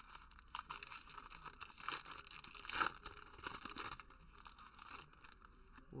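Foil wrapper of a trading-card booster pack being torn open and crinkled by hand, in irregular crackling rustles. The crackling is loudest about three seconds in and thins out over the last two seconds.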